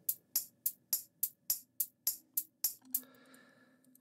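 Programmed electronic hi-hat layer played back solo: an even run of crisp, bright hits about three and a half a second, stopping about three seconds in.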